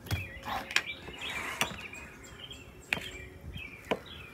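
Birds chirping faintly in the background, broken by a few sharp clicks of a knife blade against a ceramic mixing bowl as cream cheese is stirred into a chicken filling.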